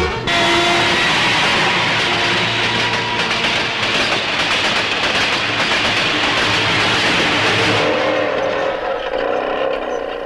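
Film soundtrack: loud, steady rushing noise of a train running over rails, with music tones underneath. The noise thins near the end, leaving held musical tones that stop just after.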